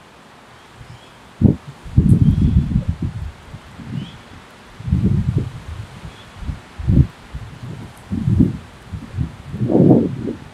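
Wind buffeting the microphone in irregular low gusts, some a fraction of a second long and some about a second, the biggest near the end.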